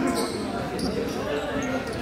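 Voices of several people talking over one another in a large gymnasium, with a basketball bouncing on the hardwood floor.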